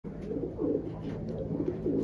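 Racing pigeons cooing, a run of low, wavering coos overlapping one another.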